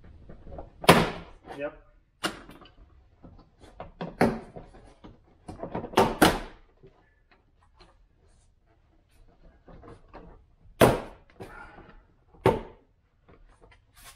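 Plastic door trim panel of a 4th-generation Toyota 4Runner's rear door being pried and pulled away from the door, with several sharp snaps and knocks spread out over the stretch as its plastic retaining clips pop loose.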